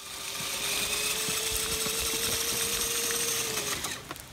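Electric motor of a Redcat Gen7 Pro RC crawler whining at a steady pitch as it drives through wet mud, over a steady hiss of rain. The whine stops just before the end.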